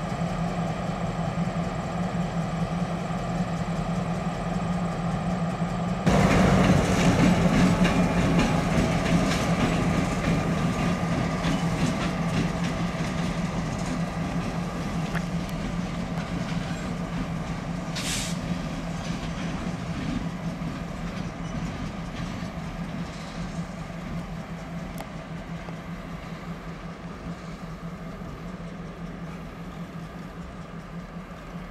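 Diesel freight locomotives running light at low speed: a steady low engine drone that jumps louder about six seconds in and then slowly eases off, with one brief sharp sound about eighteen seconds in.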